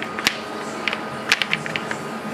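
Perforated instrument sterilization tray being closed by hand and latched: a scatter of light plastic clicks and rattles, bunched together about a second and a half in as the lid catches.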